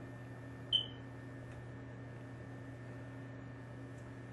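A steady low electrical hum with a faint hiss, and one short high-pitched beep about three quarters of a second in.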